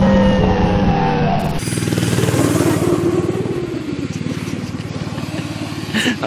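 Snowmobile engine running with a rapid firing pulse. The sound changes abruptly about a second and a half in, then slowly fades.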